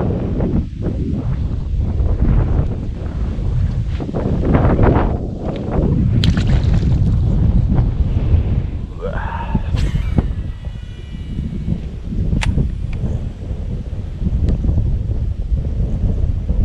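Wind buffeting the microphone: a loud, steady, low rumble that rises and falls in gusts. A few sharp clicks stand out about ten and twelve seconds in.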